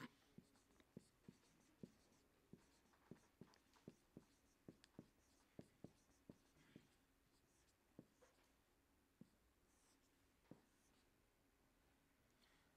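Marker pen writing on a whiteboard, heard as faint, irregular ticks and short strokes. They come several a second for the first half and thin out later.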